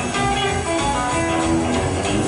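A live country band playing an instrumental passage: acoustic and electric guitars over bass and drums, with no singing.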